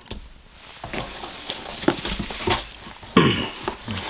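Rustling and a few light clicks and taps as cardboard and paper packaging and the items inside are handled.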